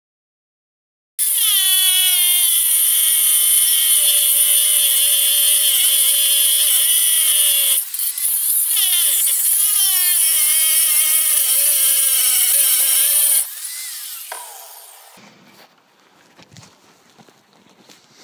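Angle grinder with a diamond-tipped disc grinding the steel mounting lugs off a Mazda RX8 seat runner. It starts about a second in, its motor pitch wavering as it bogs under load, with a short break about eight seconds in. The disc is losing its edge, so it cuts slowly. The grinder cuts off near three-quarters of the way through and winds down, followed by faint handling knocks.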